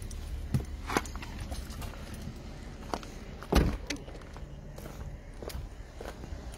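Mercedes S-Class car door shut with one heavy thud about three and a half seconds in, amid footsteps and a few small knocks.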